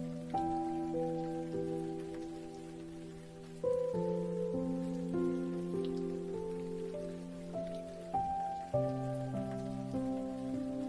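Slow, soft piano music, a few held chords and melody notes struck every second or so, with steady rain falling beneath it.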